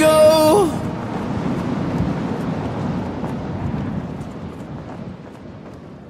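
A male pop vocal holds the final sung word "go" on one note and stops under a second in. A noisy, reverberant wash follows and fades away gradually: the song's closing tail.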